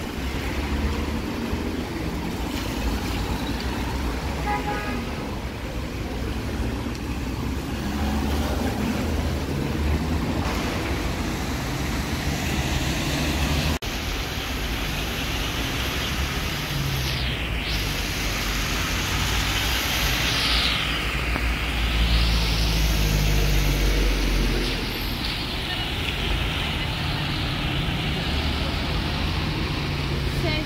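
Busy city road traffic in slow congestion: engines running and tyres hissing on wet asphalt, with louder swishes of vehicles passing close in the second half.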